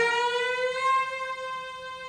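Solo cello: after a short pause, a loud high bowed note is struck sharply and held, its pitch sliding up slightly at first.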